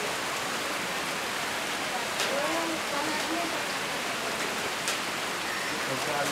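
Steady rain falling: an even hiss, with a few sharper ticks of drops striking close by.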